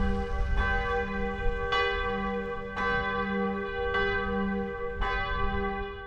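Church bell ringing, struck about once a second, each stroke ringing on into the next. A low rumble sits underneath.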